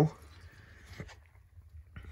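Faint trickle of engine oil draining from the drain plug hole into a drain pan, fading in the first second or so. There is a small click about a second in.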